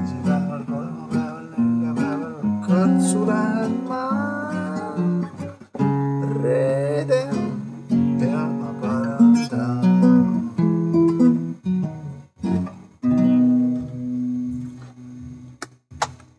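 A man singing a song while playing an acoustic guitar, the sung melody over steadily strummed and held chords, with short pauses between phrases. The song comes to an end just before the end.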